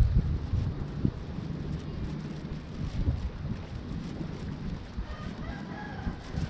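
Wind buffeting the microphone as a gusty low rumble, strongest in the first second. A brief bird call comes near the end.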